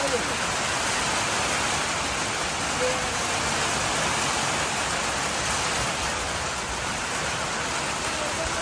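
Steady rain falling on wet paving: an even, unbroken hiss.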